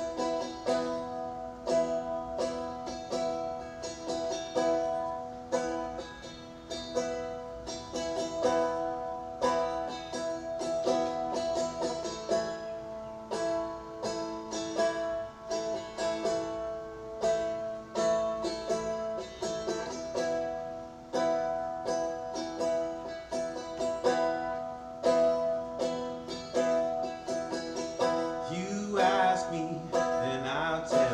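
Seagull Merlin, a four-string dulcimer-style fretted instrument, strummed in a steady, even rhythm: the solo instrumental opening of a slow song before the vocal comes in.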